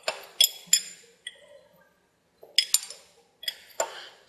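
Steel open-end wrench clinking against a hydraulic hose fitting on a tractor loader valve as the line is worked loose. Sharp metallic clinks with a short ring: about three in the first second, then a pause, then three or four more near the end.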